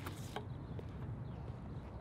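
A shot put stand throw: a short, sharp burst of noise at the release right at the start, then only a low, steady outdoor rumble.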